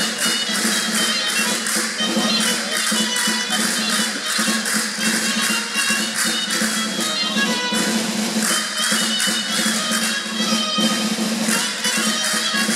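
Live traditional Spanish jota played by a small folk band: a sustained melody over a quick, even percussion beat of about four strokes a second.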